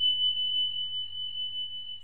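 A single high-pitched ringing tone from a subscribe-button sound effect, held steady with a slight waver, over a faint low hum.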